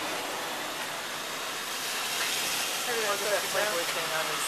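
Electric box fan running with a steady rush of air, getting a little louder about halfway through. Faint voices in the background.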